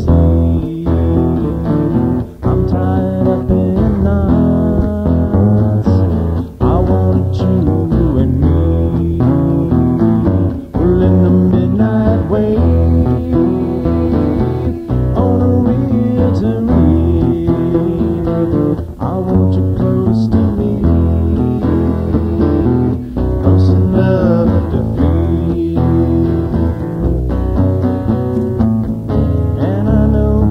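Recorded band music with guitars and bass guitar playing continuously, a stretch of the song between its sung lines.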